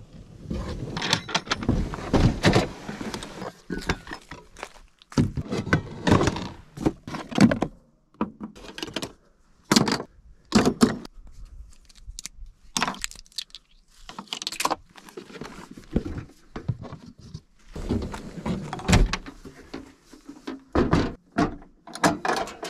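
Irregular thunks, knocks and light rattles of camp cooking gear (stove, pots and containers) being handled and set out, with short pauses between bursts of handling.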